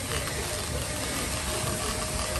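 A machine running steadily: a low hum with a faint steady tone over an even hiss.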